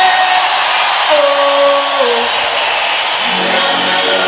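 Live rock concert music: a man's voice holds a long sung note that steps down in pitch about two seconds in, over the band and a large crowd. Near the end a lower steady note comes in.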